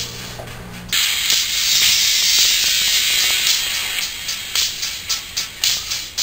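Music playing through a Huawei piston-type in-ear earphone held close to the microphone. It starts loud about a second in and comes through thin and hissy, all treble and hardly any bass, with a beat showing near the end.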